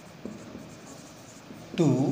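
Marker pen writing on a whiteboard, quiet strokes, with a man's voice starting again near the end.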